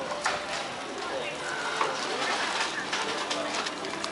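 Background chatter of passers-by in the open air: indistinct voices over a steady outdoor hum.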